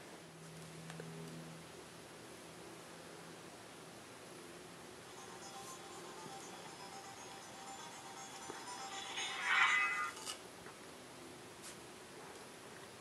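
Faint music played through the HTC Rezound's phone loudspeaker as an embedded Flash video starts, swelling to a brief louder tuneful phrase about nine seconds in that stops abruptly a second later.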